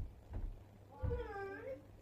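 A single meow about a second in, its pitch dipping and then rising, after a couple of soft low thumps.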